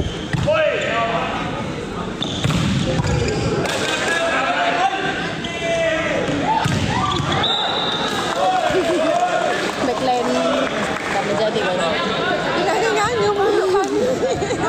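Volleyball rally in an indoor sports hall: several sharp slaps of the ball being hit, over continual crowd voices and shouts that echo in the hall.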